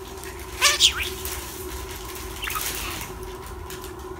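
Budgerigar giving a loud, high-pitched two-part chirp with quick pitch glides about half a second in, then a fainter short chirp about two and a half seconds in.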